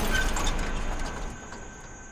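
The aftermath of a car crashing down onto its roof: a rumbling, clattering noise that dies away steadily over about two seconds, with a faint high ringing under it.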